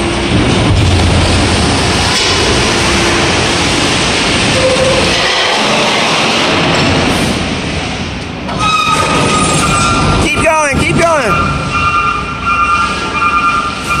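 A leather couch being pushed across a concrete floor, giving a continuous scraping rumble; for the last several seconds a steady high squeal sounds over it.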